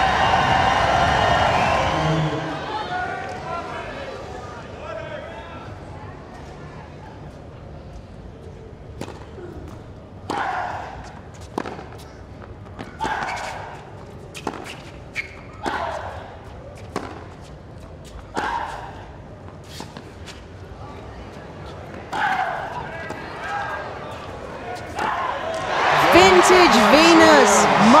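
A long tennis rally on a hard court: the ball is struck back and forth with a sharp crack at each shot, many of them followed by a player's short grunt. The crowd noise dies down before the point, and near the end the crowd breaks into loud cheering and whooping as match point is won.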